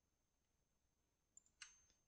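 Near silence, with a faint computer mouse click about one and a half seconds in and a softer tick just before it.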